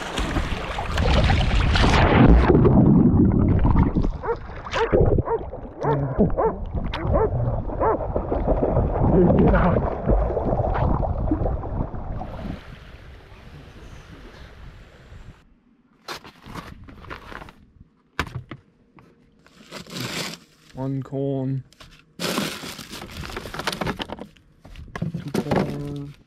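Water splashing as a dog runs through knee-deep sea water, with wind on the microphone, for about twelve seconds. It then settles to quieter water, and after that come crinkling and rustling of plastic food bags being handled in a camp fridge, in short sharp bursts.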